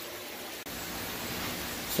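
Steady, even background hiss with no distinct events, stepping up slightly about a third of the way in.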